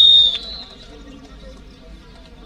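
Referee's whistle in a kho kho match: the end of one long, steady, high blast that cuts off sharply about half a second in, leaving a faint murmur of the crowd.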